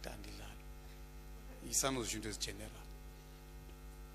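Low, steady electrical mains hum from the microphone and sound system, with a man's voice saying a few words about halfway through.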